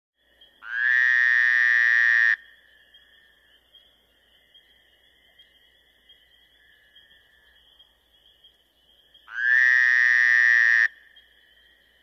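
A long buzzing pitched tone sounds twice, each time for about a second and a half and about eight seconds apart, starting and stopping sharply, with a faint steady high hum between them.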